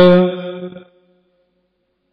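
A man's voice holding one long chanted note, which fades and ends about a second in.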